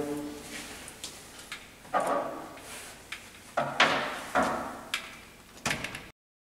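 Plastic sampling module of a VESDA-E smoke detector being slid back into its housing: a series of short knocks and sliding scrapes, about six of them from about two seconds in.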